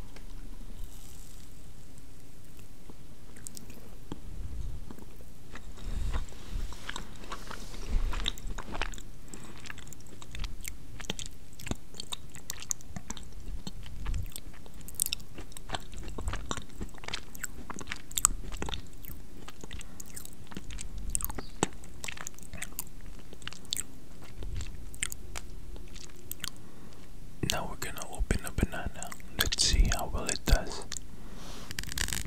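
Close-up chewing of a brownie, picked up by a condenser microphone at maximum gain: irregular soft clicks and mouth smacks with low thumps. The clicks get denser near the end.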